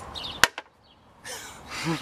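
A single sharp click about half a second in, followed by a sudden drop to near silence for most of a second before faint background noise returns.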